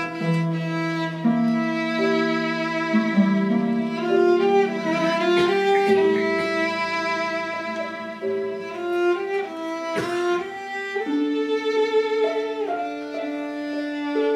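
Violin and concert pedal harp playing together live, the violin carrying long bowed notes that move from pitch to pitch over the harp.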